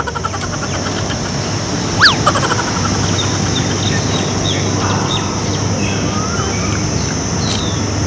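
Outdoor park ambience: a steady background of distant traffic with a constant high hiss, and birds chirping and calling. The loudest moment is one sharp falling bird call about two seconds in, with short chirps scattered through the rest.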